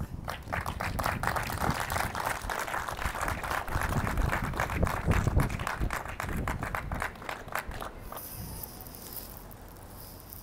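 A small outdoor crowd clapping after a speech, a dense patter of hand claps that thins out and stops about eight seconds in. Wind rumbles low on the phone's microphone underneath.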